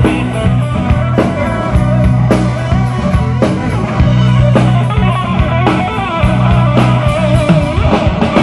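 Live rock band playing an instrumental passage without vocals: electric guitars and bass over a steady drum-kit beat, amplified through stage speakers.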